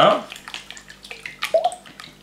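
Eggs being beaten with a silicone spatula in a glass bowl: wet sloshing and splashing with quick, irregular clicks.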